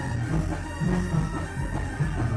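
Mexican banda music: brass and woodwind instruments playing over a steady low beat.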